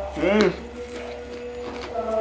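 A man humming a single appreciative "hmm" with his mouth full while eating, the pitch rising and falling once, about a fraction of a second in. Soft background music with held tones sits under it.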